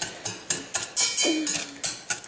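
Wire whisk stirring dry cocoa powder and sugar in a stainless steel pot, its wires clicking and scraping against the metal in a quick, uneven rhythm.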